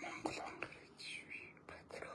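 A man's voice, whispering in short broken phrases.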